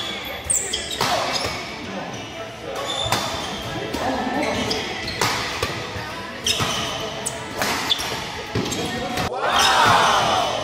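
Badminton doubles rally in a large hall: repeated sharp hits of rackets on the shuttlecock, with short squeaks of shoes on the court floor and players' voices. Near the end there is a brief louder sound that rises and then falls in pitch.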